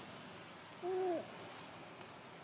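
A single short hooting animal call about a second in, held on one pitch and dropping at the end, over steady faint background noise.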